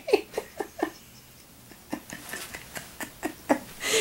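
A woman laughing softly in short repeated breaths, dying away about a second in, then quiet chuckling again near the end.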